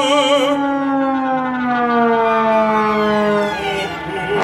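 Orchestral music: several sustained tones, wavering at first, slide slowly downward in pitch together in a long glissando.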